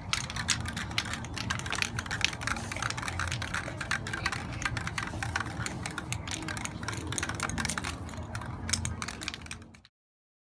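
Mixing balls rattling inside aerosol spray-paint cans as they are shaken to mix the paint: a fast, continuous clatter of clicks that cuts off just before the end.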